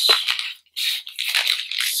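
Plastic bag crinkling as it is handled, in two stretches with a short break about half a second in.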